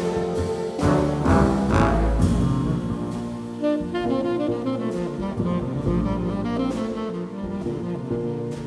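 Tenor saxophone playing with a large jazz ensemble of low brass, bassoons, cellos, double basses and drums. The first two seconds are loud full-band hits with drums; after that the texture thins to bass and saxophone.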